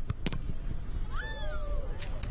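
Outdoor field ambience with a steady low rumble of wind and distant noise. A little past halfway comes one short call that rises and then falls in pitch, and two light clicks come near the start.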